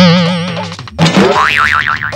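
Two comic 'boing' sound effects with a wobbling pitch. The first starts sharply and fades over about a second; the second comes in about a second later, its pitch swinging quickly up and down.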